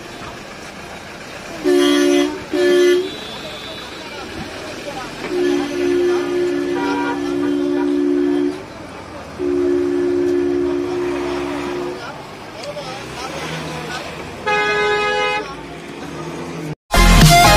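Vehicle horn honking on a two-note tone: two short toots, then two long blasts of about three seconds each. Near the end a different, higher-pitched horn sounds once briefly.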